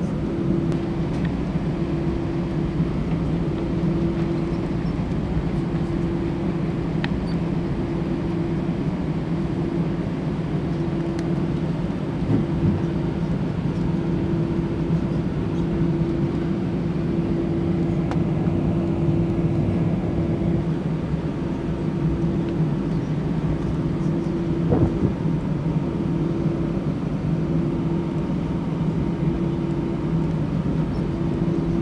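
Cabin noise inside an Airbus A320 taxiing on its engines: a steady low hum over a constant rumble, with an occasional light bump from the wheels.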